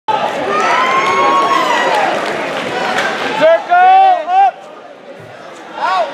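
Spectators in a gym shouting and cheering, many voices at once, then one voice yelling a few short loud shouts about halfway through; after that the noise drops to a low murmur until another shout near the end.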